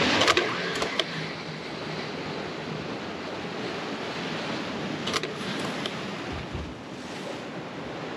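Sea waves surging and breaking against a concrete seawall, a continuous rushing that is loudest in the first second, with a few short sharp clicks.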